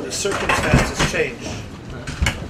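Tableware clinking at a table: several sharp clinks of dishes and cutlery in quick succession within the first second or so, with voices murmuring underneath.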